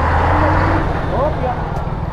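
A motor vehicle passing close by: a low engine rumble and road noise that swell at the start and ease off after about a second.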